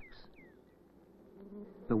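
Faint, low hum of honey bees buzzing, growing a little louder in the second half.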